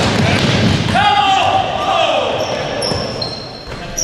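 Basketball dribbled on a hardwood gym floor during a fast break, with players' feet running and a voice calling out about a second in, all echoing in the large gym.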